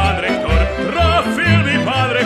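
Folk-band music: a violin plays the melody with wide vibrato over low bass notes that fall about twice a second.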